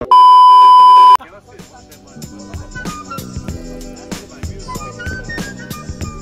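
A loud, steady 1 kHz test-pattern tone, the bars-and-tone beep of a TV colour-bars transition effect, lasting about a second and cutting off abruptly. Background music with a steady beat follows.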